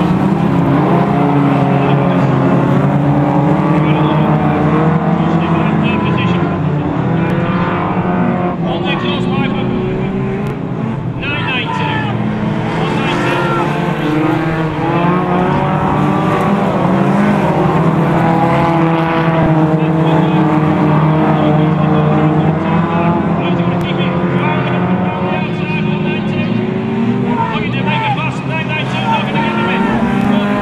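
A pack of hot rod race cars lapping an oval at racing speed, several engines running hard at once and rising and falling in pitch as they accelerate and lift through the bends.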